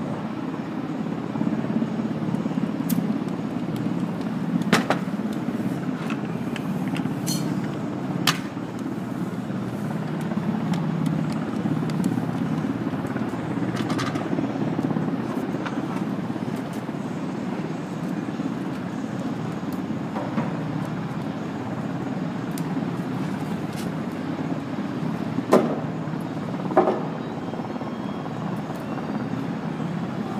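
Steady low machinery rumble with scattered sharp knocks of lumber being handled while wooden crates are assembled, and two louder knocks near the end.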